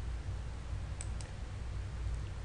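A computer mouse button double-clicked about a second in, two quick clicks over a faint steady low hum.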